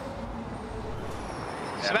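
Formula E car's front wing vibrating as the car runs: a steady, even noise with a faint steady tone.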